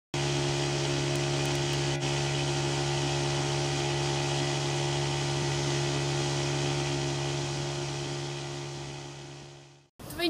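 Small outboard motor on an inflatable boat running steadily at speed, a constant hum over the hiss of rushing water, fading away over the last two seconds.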